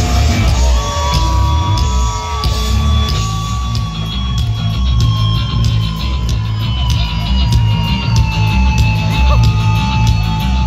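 Live heavy metal band playing loud through a big PA, with a pulsing bass and drum beat under one long held high note that sinks slowly in pitch and lets go near the end.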